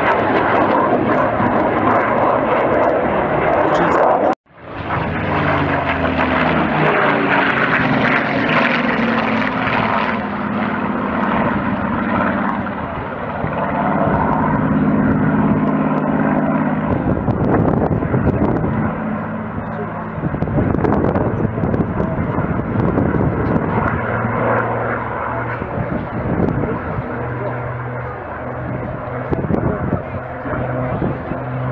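Fighter jet's engine noise, the F/A-18 Hornet's jets, which cuts off abruptly about four seconds in. Then a Supermarine Spitfire's piston engine drones overhead, its pitch shifting as it flies past.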